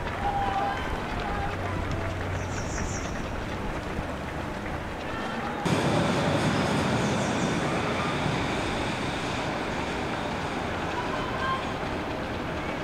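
Outdoor street noise with faint, distant crowd voices. A little over halfway in, it changes suddenly to the louder, steady rumble of a train running on a brick railway viaduct, which slowly fades.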